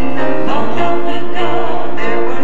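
Mixed gospel quartet of two men and two women singing in harmony, the voices held with vibrato over a steady low part.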